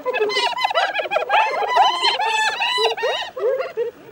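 Several spotted hyenas giggling: fast, overlapping series of short high-pitched calls that rise and fall. This is the hyena 'laughing' heard when feeding animals squabble over a kill, a sign of stress, aggression and competition.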